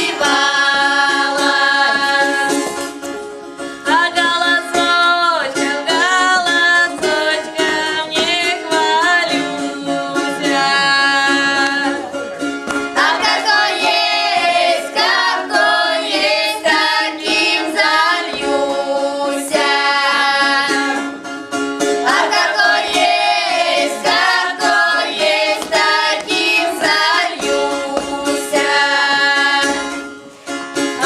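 A children's folk ensemble, mostly girls, singing a southern Russian village song together in several voices. The song goes phrase by phrase, with brief breaks for breath between the lines.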